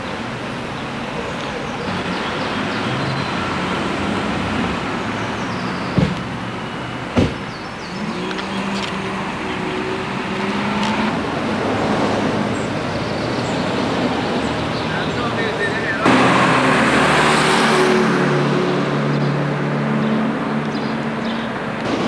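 Town street ambience with road traffic: cars passing, and a louder vehicle running by from about two-thirds of the way in. Two sharp clicks come a little over a second apart about a quarter of the way through.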